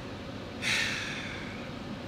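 A man's long, heavy sigh out, starting about half a second in and fading over about a second, over a steady low hum inside the car.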